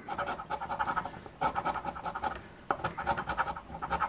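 A coin edge scraping the coating off a paper scratch-off lottery ticket in short runs of rapid back-and-forth strokes.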